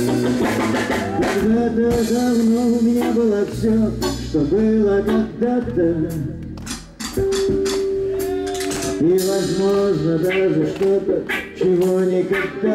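Live band playing: acoustic and electric guitars and a drum kit under a wavering melody line, with a long held note just after the middle.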